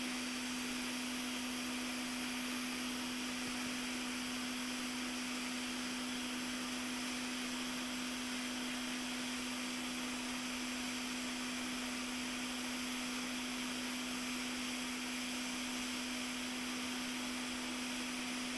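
Quick 861DW hot air rework station blowing on a corroded SMC chip to reflow its solder balls: an even hiss of air over a constant low hum, unchanging throughout.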